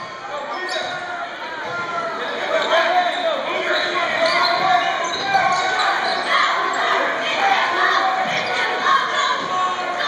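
Basketball being dribbled on a hardwood gym floor during a game, with many overlapping voices from the crowd and players echoing in the gym, the voices growing louder a couple of seconds in.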